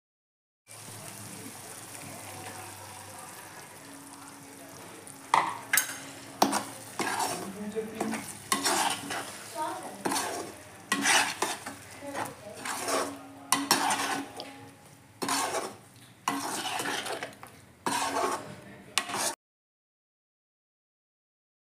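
Thick tomato masala sizzling in a kadai. From about five seconds in, a steel slotted spatula scrapes and stirs it in repeated irregular strokes, one or two a second.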